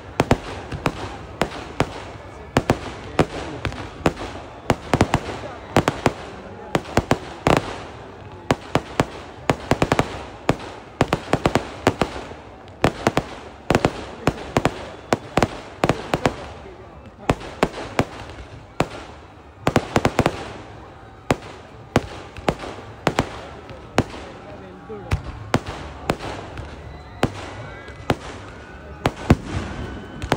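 Firecrackers going off in quick, irregular volleys of sharp cracks, with louder clusters every few seconds, and voices beneath them.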